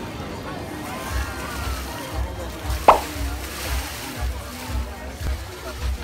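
Busy swimming-pool ambience: crowd chatter and water sloshing over music with a low, steady beat. A single brief, sharp sound stands out about three seconds in.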